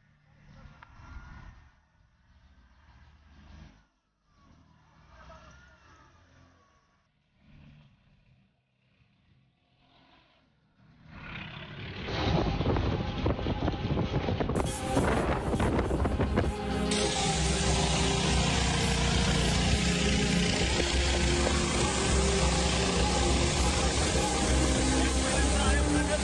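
Faint sounds for the first ten seconds or so, then from about eleven seconds in a loud, steady rushing noise of wildfire and wind on a phone microphone.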